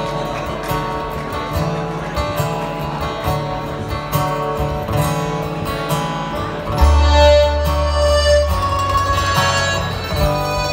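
Irish folk band playing the slow instrumental introduction to a song on acoustic guitars and button accordion, with no singing yet. About seven seconds in, a deep low note comes in and holds for a couple of seconds.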